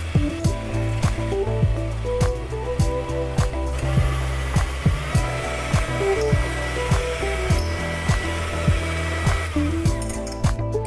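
Electric hand mixer running, its beaters whipping eggs and sugar into a sponge cake batter, thickening toward the ribbon stage. Background music with a steady beat plays over it.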